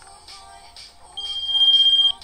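Airpage pager (Design by Philips) beeping its alert: a single steady high-pitched tone starts a little over a second in and grows loud. The freshly powered pager is working.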